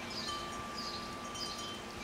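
Clear ringing tones like wind chimes, the longest held for over a second, over a steady hiss of outdoor background noise, with a few faint high chirps.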